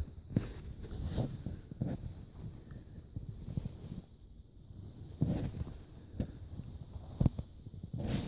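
Handling noise of a phone held up against soft fabric: scattered rustles and a few light knocks at irregular moments.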